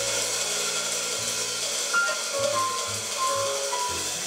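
Slow, sparse jazz: single piano notes ringing out over long low tones, with a steady cymbal wash underneath.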